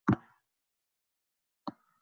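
A short, sudden plop-like mouth sound, a lip smack between words, just after the start, then silence, and a faint second click shortly before speech resumes.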